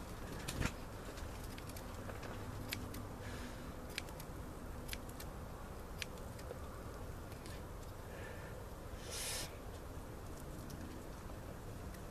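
Scissors snipping through papyrus leaves, a string of short sharp snips about a second apart. There is a brief hiss about nine seconds in.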